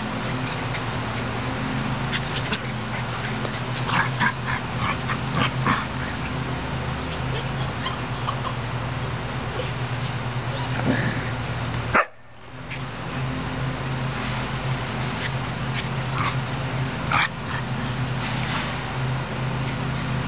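Borador puppies yipping and whimpering in short, scattered calls, over a steady low hum.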